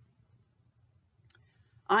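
Near silence with a couple of faint clicks a little over a second in, then a woman starts speaking just before the end.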